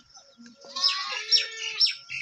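A small bird chirping repeatedly from about a second in: a short, high, falling note about twice a second.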